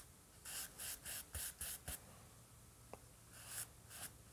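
Compressed charcoal stick scratching on drawing paper in quick, short shading strokes, about six in the first two seconds. A pause follows, then a longer stroke near the end.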